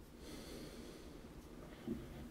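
A faint breath drawn in, a soft hiss lasting about a second.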